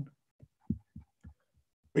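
A few short, soft low thumps, about four in a second, with gaps of quiet between them.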